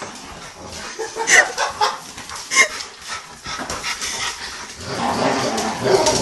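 A chocolate Labrador and a pit bull puppy at play: two short high yips about a second and two and a half seconds in, then a sustained play-growl from about five seconds in.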